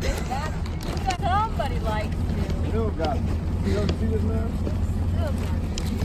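Steady low rumble of wind buffeting a phone microphone outdoors, with faint indistinct voices.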